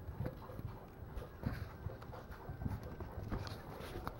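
Faint, irregular light taps and scuffles of Maltese puppies' paws moving about on a wooden floor and blanket.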